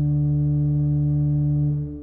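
Richards, Fowkes & Co. pipe organ holding a long final chord, steady in pitch and loudness. The chord is released near the end and dies away in the church's reverberation.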